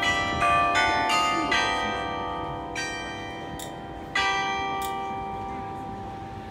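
Carillon bells in a tower struck in a quick run of notes, then a softer single note and one loud one about four seconds in, each left to ring and fade slowly.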